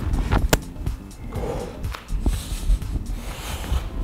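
Background music under a man's hard breathing during a plank exercise, with two sharp taps in the first second.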